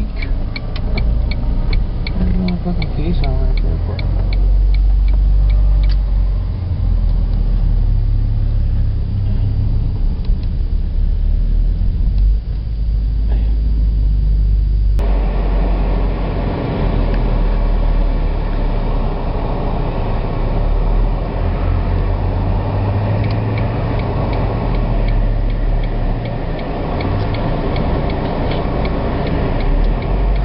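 Car cabin noise: engine and road noise heard from inside while driving, as a steady low rumble. Fast, evenly spaced ticking comes and goes near the start and again near the end, and the sound changes abruptly about halfway through.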